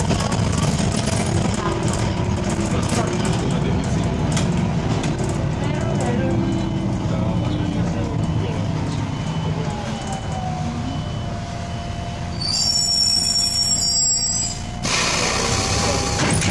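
Interior noise of an Irisbus Citelis 10.5 m CNG city bus under way: a steady rumble of engine and road. A whine comes in about halfway and holds. Near the end there is a brief high squeal, then a burst of hiss.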